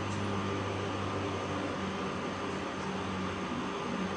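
Room tone: a steady low mechanical hum with a hiss over it, unchanging throughout.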